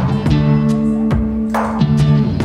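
Live-looped blues-rock instrumental: an acoustic-electric guitar strummed over sustained low notes, with a steady beat of percussive hits about twice a second.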